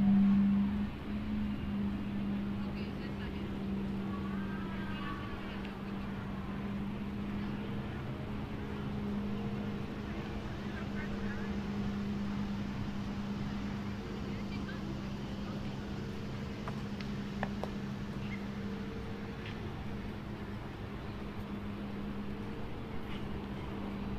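A steady low motor hum holding one constant pitch, with faint distant voices now and then.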